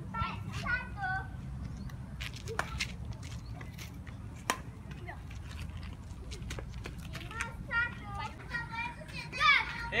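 Children calling out and chattering while playing, with a few sharp, isolated clicks of badminton racquets hitting a shuttlecock between the bursts of voices.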